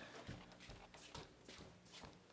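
Faint, scattered soft knocks from a handheld camera being carried and handled, over a low steady hum.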